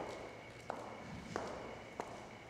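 Footsteps of heeled ankle boots on a concrete floor: sharp heel clicks at an even walking pace, one about every two-thirds of a second, each with a short echo.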